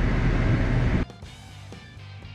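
Low rumble of a GMC pickup truck heard from inside its cab for about a second, then a sudden cut to quieter background music with a steady plucked rhythm.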